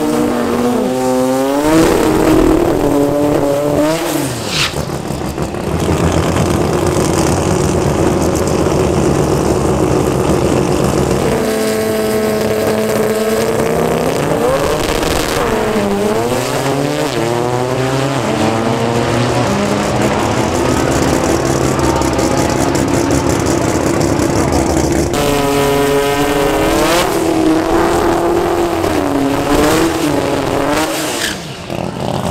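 Toyota Starlet drag cars' engines running at high revs through burnouts and a side-by-side launch, the pitch climbing and dropping several times as they rev and shift.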